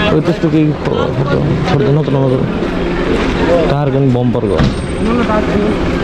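Several people talking, their voices overlapping, over a steady background hum.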